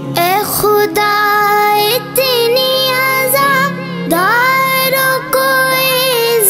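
A boy's solo voice singing an Urdu manqabat, with long held notes and ornamented turns between them. About four seconds in, one note rises and is held for about a second.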